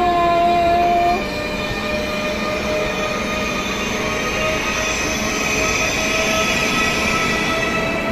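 Turkish high-speed electric train (TCDD HT80000-series Siemens Velaro) pulling out of the station and gathering speed past the platform. Its electric drive whine rises slowly in pitch over a steady running rumble, after a brief steady tone lasting about a second at the start.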